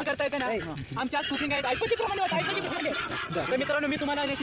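Several men talking over one another in continuous, overlapping chatter.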